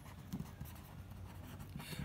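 A pen writing a word on paper, faint.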